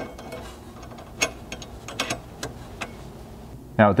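Light metallic clicks and clinks, a handful spread irregularly over a couple of seconds, as a 5/16 hex bolt, washer and serrated flange nut are fitted by hand into a steel rock slider's mounting bracket.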